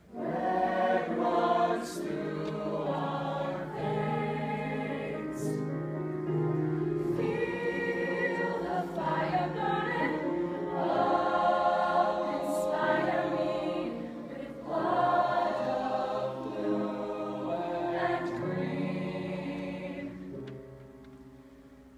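Show choir singing a slow ballad in held chords, the voices coming in together just after the start, with a brief drop between phrases about fourteen seconds in.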